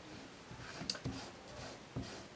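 Faint rustling of folded fabric being handled as a tape measure is laid along it, with a couple of soft ticks about a second in.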